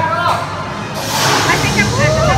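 Flying roller coaster in its loading station: riders' voices, and about a second in a burst of hissing air from the ride's pneumatics as the train is readied to tilt the seats into the flying position.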